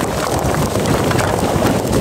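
A load of field rocks sliding and tumbling out of a tipped dump trailer bed onto a rock pile: a loud, steady clatter and rumble of many stones knocking together, which stops abruptly just after the end.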